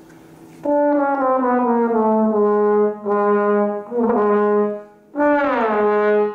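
Trombone played with a slow slide glissando from D down to G sharp, the slide drawn out to seventh position, and the low note held; after a couple of short held notes the same downward glide is played a second time.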